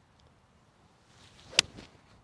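Seven iron striking a golf ball off turf: a single sharp click about a second and a half in, just after a faint swish of the swing.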